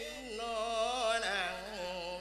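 A Buddhist monk singing a Thai lae sung sermon into a microphone: one male voice drawing out long notes with a wavering, ornamented pitch.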